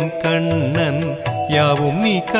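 Carnatic-style Hindu devotional music to Krishna: an ornamented, gliding melody over a steady drone, with regular percussion strokes, in a short break between sung lines.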